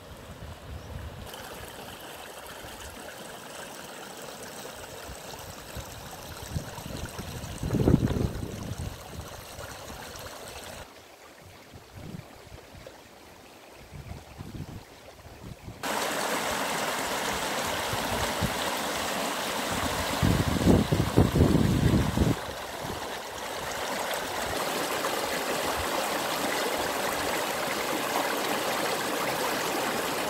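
Small woodland stream running over stones, a steady rush of water that jumps louder about halfway through, where it tumbles over rocks close by. Brief low rumbles come a couple of times, the strongest near the start of the first half.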